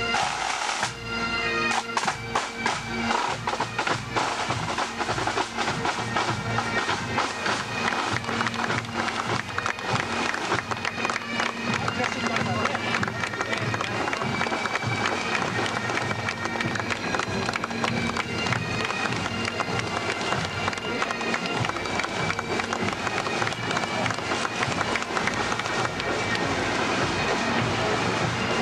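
Pipe band marching past: bagpipes with their steady drone, fading about a second in, leaving rapid snare-drum strokes mixed with crowd voices.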